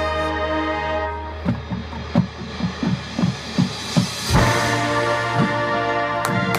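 Marching band playing: a held brass chord over a steady low drone gives way to a run of separate low drum hits, then a loud hit brings in a full brass chord again a little past four seconds in.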